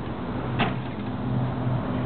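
Motorhome entry door and screen door being handled as they swing open, with one sharp click about half a second in. A steady low hum grows louder as the door opens.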